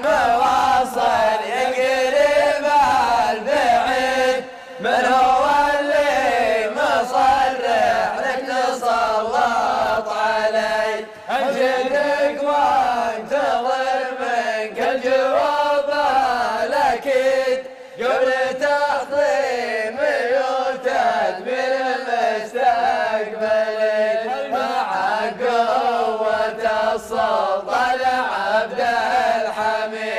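A group of men chanting a sung Arabic poem together in unison, in long melodic phrases with short breaks for breath every several seconds.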